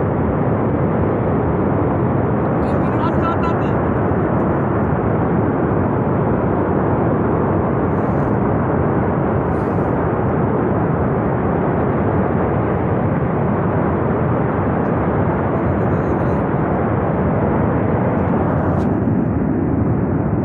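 Steady, loud rushing noise of a glacial flash flood of water, mud and debris tearing down a mountain gorge after a glacier burst.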